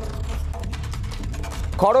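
News-bulletin background music: a steady low rumble under fast, clock-like ticking. The narrator's voice comes back near the end.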